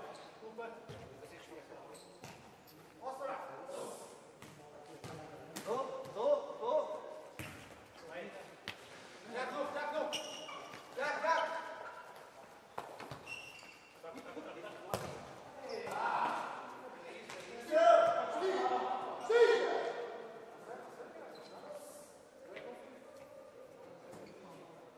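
Futsal ball kicked and bouncing on a sports hall floor, with players' shouts echoing in the hall; the loudest shouts come about three quarters of the way through.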